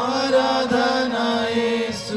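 Three men singing a Telugu worship song together into microphones, holding one long note.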